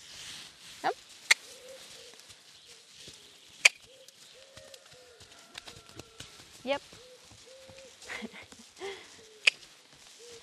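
A horse trotting and cantering around a sand round pen, its hoofbeats soft and faint. Three sharp clicks stand out above everything else, and a bird's low hooting notes repeat in the background.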